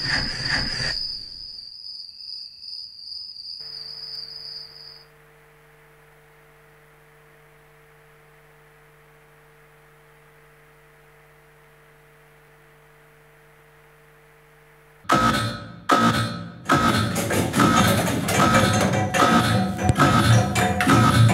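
A high, rapid chirping trill like a cricket's for about the first five seconds. Then a faint steady low hum, and about fifteen seconds in, loud background music with drums and percussion starts.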